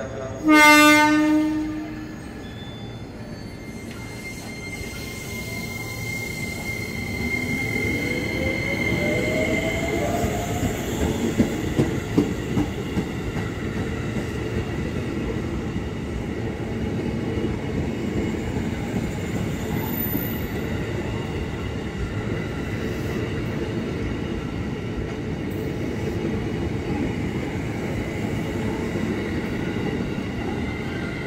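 A KRL electric commuter train sounds one short horn blast about half a second in, then pulls away. Its motor whine rises in pitch as it picks up speed, over a steady running rumble with a few sharp wheel clacks.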